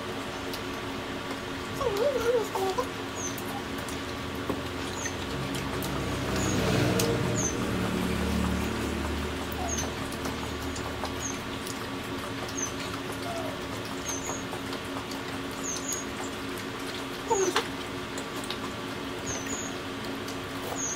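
Close-up eating sounds: chewing and mouth noises of people eating pizza and spaghetti, with a couple of short hums about two seconds in and near the end.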